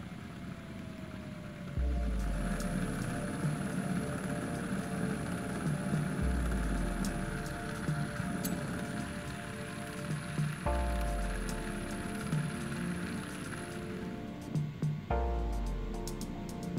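Background music with a slow, repeating bass note. Under it a DIY 3D-printed cycloidal actuator driven by a BLDC motor spins with a steady friction hiss and a thin high whine, the 3D-printed parts rubbing at speed. Both stop near the end.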